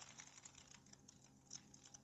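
Near silence: room tone, with a faint tick about one and a half seconds in.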